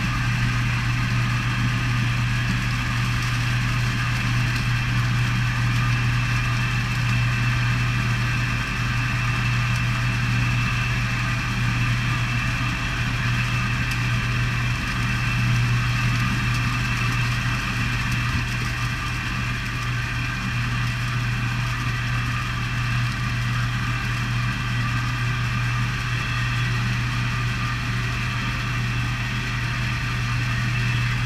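Fish stocking truck idling, a steady low engine hum that holds evenly throughout.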